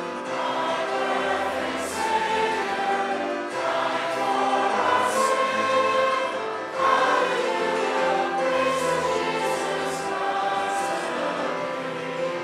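Church congregation singing a worship song together, voices holding long notes.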